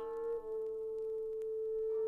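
Music played from a vinyl record on DJ turntables: one long held tone with soft overtones, dipping slightly in pitch about half a second in, with higher notes joining near the end.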